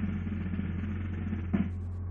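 Film score music: a sustained snare drum roll that breaks into a single drum hit about one and a half seconds in, over a steady low hum.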